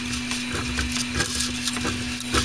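PLA filament being pushed by hand up through the feed guide of a Dremel Digilab 3D45 3D printer, with scattered light rubbing and clicks. Underneath runs a steady hum from the printer as it preheats.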